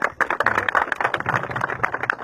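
Crowd applauding: many hands clapping irregularly at once.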